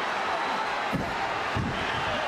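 Large arena crowd roaring steadily, with two dull low thuds of wrestlers' blows landing, about a second in and again shortly after.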